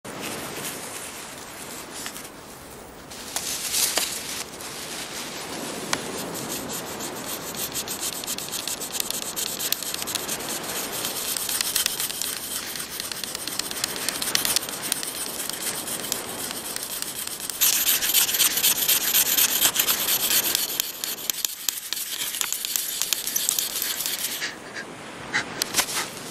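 Friction fire-making: a wooden stick worked hard against a wooden plank, a continuous rasping scrape of wood on wood, as the friction heats the wood toward an ember in the tinder. It breaks off briefly near the start and grows louder for a few seconds about two-thirds of the way through.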